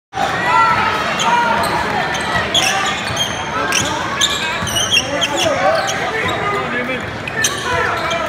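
Basketball game sounds in a gymnasium: the ball bouncing on the hardwood court and sneakers squeaking, over crowd voices and shouts echoing in the hall.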